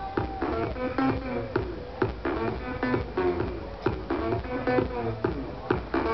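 Loud amplified live music with a steady beat about twice a second and a repeating melody, heard from within the crowd in front of the stage.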